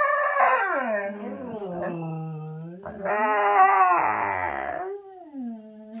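Two Siberian huskies howling together in long, wavering howls at different pitches that glide up and down. A louder howl starts about three seconds in and dies away near the end.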